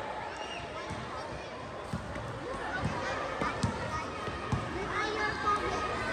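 A basketball bouncing on a hard court, a few scattered thuds as it is dribbled, under low chatter of voices from players and spectators.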